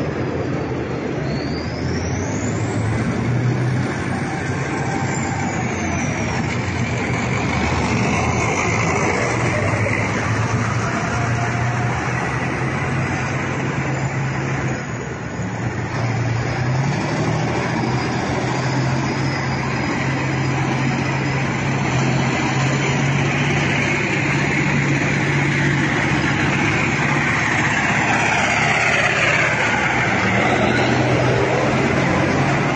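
Engines of a convoy of military vehicles running as they pass along a road, a steady low drone. Whines rise and fall in the first few seconds, and the pitch falls steeply near the end.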